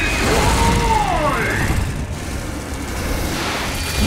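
Cartoon battle sound effects: a deep booming rumble, with a pitched sound that swells up and falls back over the first two seconds.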